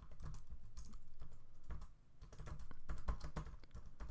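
Typing on a computer keyboard: a run of key clicks, with a brief pause about halfway through.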